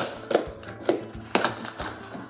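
Plastic snap-on lid being pressed onto a plastic tub, giving several sharp clicks and taps about half a second apart, over background music.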